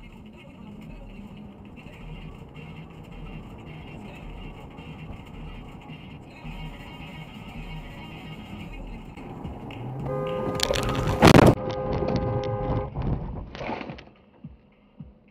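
Steady road and engine noise heard from inside a moving car. About ten seconds in, a car horn sounds for roughly two and a half seconds, with one very loud sharp burst in the middle of it.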